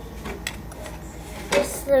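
Metal spoon stirring chocolate milk in a plastic cup, clicking against the cup, with a louder knock about one and a half seconds in.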